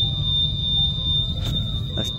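Factory machinery running: a steady low rumble with a constant high-pitched whine, and a single knock about a second and a half in.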